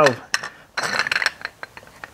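Metal engine parts handled on a workbench: a few light metallic clinks and a short scrape about a second in, followed by scattered small clicks.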